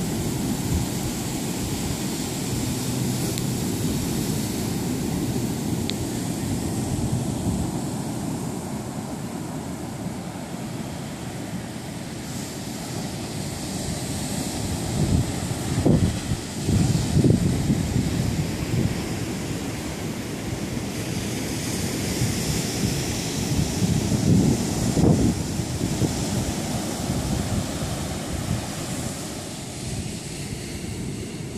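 Ocean surf washing onto a sandy beach, with wind buffeting the microphone in low rumbling gusts about halfway through and again near the end.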